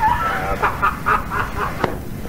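People laughing in quick short bursts, about four a second, over low background noise.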